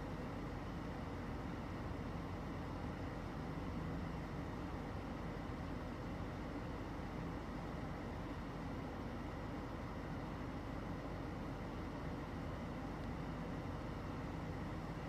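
Steady low rumbling background noise with no distinct events, typical of outdoor ambience picked up by a phone microphone.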